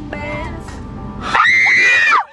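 A young woman's loud, high-pitched scream, held for just under a second near the end, over the low rumble of a car cabin.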